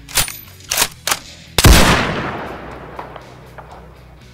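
Three sharp gunshots in quick succession, then a much louder shot about a second and a half in, with a long echoing tail that fades over the next second and a half.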